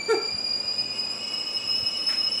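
A piercing, high-pitched squealing tone from the YouTube Poop's soundtrack, held steady and rising slightly in pitch. A brief snatch of voice cuts in just as it begins.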